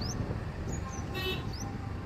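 Steady low rumble of engine, road and wind from riding on a two-wheeler in traffic, with several short high rising chirps over it and a brief squeak about a second in.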